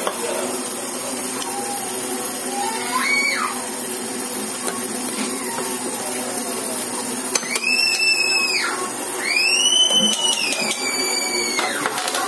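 A steady machine hum with several high whining tones that rise, hold and fall away: one about three seconds in, and two longer ones near the end.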